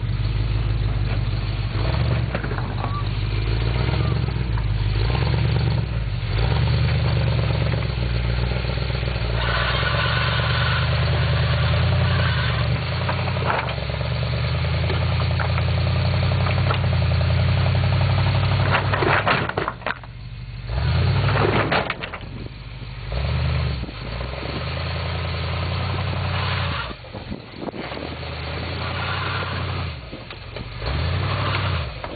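Pickup truck engine working at low speed under load as the truck crawls up over boulders, pulling steadily for most of the time. Near the last third it eases off and comes back in short bursts of throttle, with a few sharp knocks around the drop.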